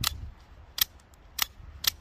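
Microtech Combat Troodon double-action out-the-front knife being fired and retracted with its thumb slide: four sharp clicks as the blade snaps out and back. The action is cycling cleanly after a hard stab through a leather shoe into a table, with the mechanism unharmed ("she's golden").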